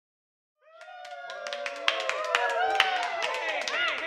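Intro of a studio-produced pop track: several sliding, voice-like tones glide and arc over one another, with scattered claps and clicks. It fades in from silence and builds before any beat starts.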